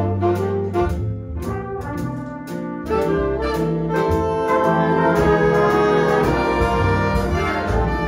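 Jazz big band playing swing live: trumpet, trombone and saxophone sections together over upright bass and archtop rhythm guitar. The ensemble eases back briefly, then comes in louder about three seconds in.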